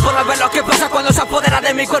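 Hip hop track: a rapper's voice over a beat, with the kick drum hitting a few times.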